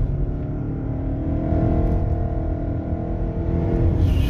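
Lexus NX 300h hybrid's petrol engine running under acceleration in sport mode, a steady drone over low road rumble, heard from inside the cabin.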